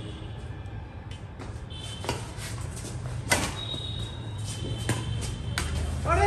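Badminton rackets striking a shuttlecock during a rally: four sharp pops about a second or so apart, the loudest near the middle, over a steady low hum.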